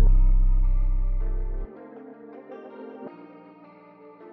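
Trap beat playing back from a DAW. A deep 808 bass note fades and cuts off abruptly about one and a half seconds in, leaving a soft, drumless electric guitar melody with chorus and echo effects.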